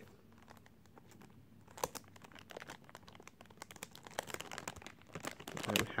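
Cellophane shrink-wrap being picked at and torn off a perfume box. It starts with a click about two seconds in, then a run of quick crinkling crackles that grows busier toward the end.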